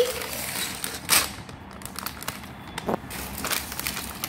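Plastic bags of LEGO pieces crinkling and rattling as they are handled, with a sharper crinkle about a second in and another near three seconds.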